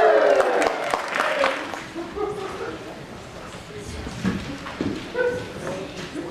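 The last sung note of a choral number falls and ends, then audience applause with whoops that fades away over about two seconds, leaving scattered voices.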